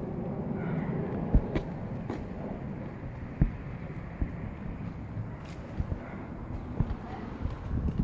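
Wind on the phone's microphone over steady outdoor ambience, with irregular soft thumps of footsteps on a concrete walkway.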